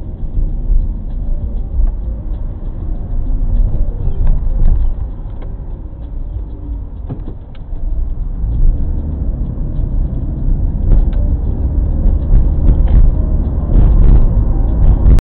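A car driving, heard from inside the cabin: steady low engine and road noise that grows louder about eight seconds in, as it pulls onto the main road.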